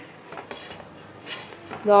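Stainless steel rolling pin rolling a coiled wheat parotta dough out on a floured steel plate: quiet, scattered rolling and light scraping of metal on metal. Speech starts up near the end.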